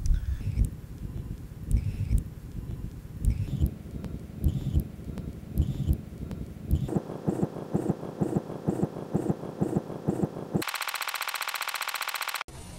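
Irregular low thumps, turning about seven seconds in into a fast, evenly repeating rattle, then a harsh buzzing digital-glitch noise near the end.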